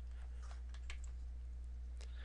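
A few faint clicks from a computer keyboard and mouse, clustered in the first second, over a steady low electrical hum.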